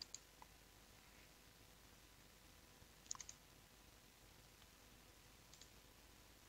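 Faint clicks of a computer mouse button, as points are picked in a drawing program: a couple at the start, a quick run of three or four about three seconds in, and a faint pair near the end, over near-silent room tone.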